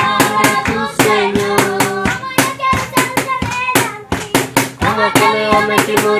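A group of children singing a praise song together, clapping their hands in a steady rhythm several times a second.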